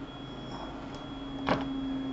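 Steady low electrical hum with a faint high-pitched whine underneath, with one short spoken word about one and a half seconds in.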